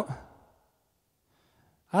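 A man's breathy sigh trailing off the end of a spoken word, fading out within about half a second, followed by a pause of near silence until he speaks again near the end.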